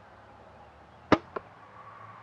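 Martin Xenon solo-cam compound bow being shot: one sharp snap of string and limbs on release, then a fainter knock about a quarter second later.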